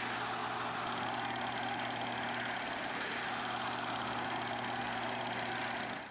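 A steady machine-like whirring hum with a low tone under it, a sound effect laid under an animated title card, with faint ticking high up.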